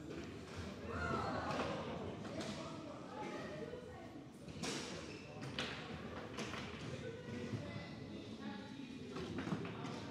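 Foosball table in play: a handful of sharp, irregular knocks as the ball is struck by the plastic figures and rods and hits the table, over faint background voices.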